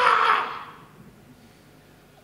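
A man's long, high-pitched shout of "ah!" into a handheld microphone, dying away about half a second in, then quiet room tone.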